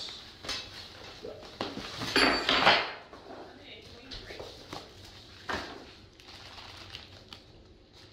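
Cardboard box being handled and a foam packing tray sliding out of it onto a wooden table: a scraping rustle about two seconds in is the loudest part, followed by a few lighter knocks as the box is handled.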